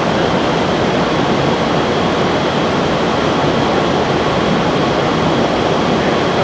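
Full-scale wind tunnel running with air blowing over a rear wing: a steady, unbroken rush of air with a faint high whine over it.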